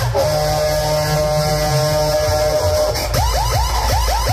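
Loud dance music over an outdoor DJ sound system with heavy bass: a held synth chord for about three seconds, then a fast, repeating siren-like swooping effect cuts in near the end.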